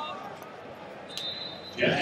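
Wrestling-tournament hall noise: a single sharp slap about a second in, then loud shouting from voices breaks out just before the end.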